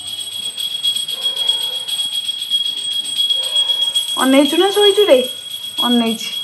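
A single drawn-out voice sound, rising then falling in pitch, about four seconds in, with a shorter one just before the end. Under it runs a steady high-pitched electronic whine.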